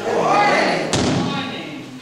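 A swelling whoosh, then a single sharp thump about a second in that fades away.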